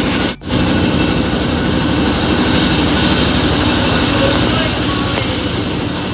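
Boat engine running steadily with a fast low pulsing throb, the sound of travelling by motorboat on open water; it drops out for an instant about half a second in, then carries on.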